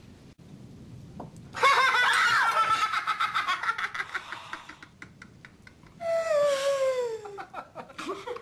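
People laughing: a long, loud fit of laughter, then after a short pause a second laugh that slides down in pitch.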